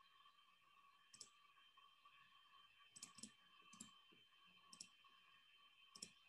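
Near silence with a few faint computer mouse clicks: one about a second in, a quick double click around three seconds, then single clicks near four and five seconds and right at the end.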